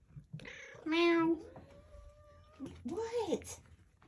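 Cats meowing close by: a short, steady meow about a second in, then a meow that rises and falls near three seconds in.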